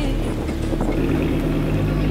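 A car engine running steadily, mixed with noise, over the low sustained notes of background music in a gap between sung lines.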